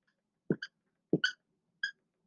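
Dry-erase marker on a whiteboard: five short squeaky strokes, two quick pairs and then a single, and the first stroke of each pair begins with a light tap of the tip on the board.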